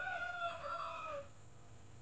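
A rooster crowing once: a short first note, then a longer drawn-out call that drops in pitch at the end and stops about a second in.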